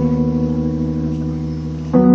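Electric piano holding a sustained chord that slowly fades, then a new chord struck just before the end.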